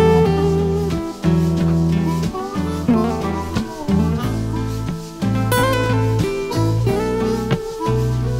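Instrumental break in a blues song: guitar picking over low sustained notes, with no singing.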